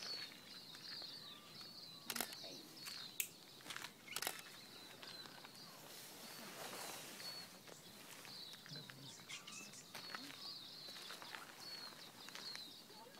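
A small bird chirping over and over in short high notes, with three sharp clicks about two, three and four seconds in and a soft rush of noise around the middle.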